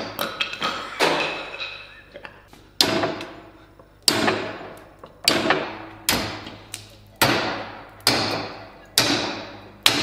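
Long steel sword blade chopping into a wooden stick clamped in a vise: about nine sharp chops, roughly one a second, each dying away over most of a second.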